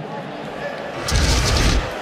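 A loud, deep boom with a hiss on top, lasting under a second and coming about a second in, over low background noise.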